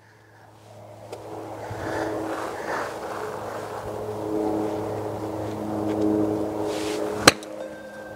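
A golf ball struck by a 56-degree sand wedge off a hitting mat: a single sharp click near the end, a shot called "flushed", struck harder than intended. Under it runs a steady hum that rises about a second in.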